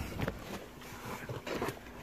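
Faint background noise with a couple of soft knocks and movement sounds.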